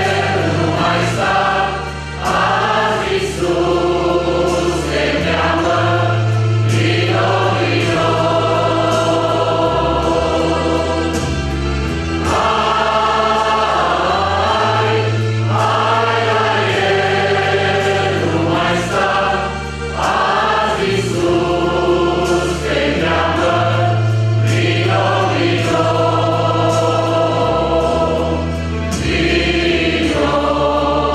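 Mixed choir of men's and women's voices singing a Christian hymn in parts, holding long chords that change every second or two over a steady low bass accompaniment.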